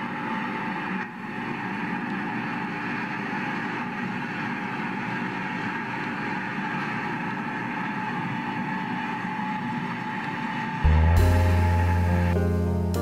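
A 1980 John Deere 880 self-propelled swather running steadily as it cuts hay. Near the end, louder piano music starts.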